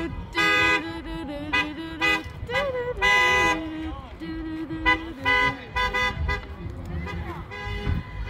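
Vehicle horns honking in a series of short toots at several pitches, the longest and loudest about three seconds in, with voices underneath.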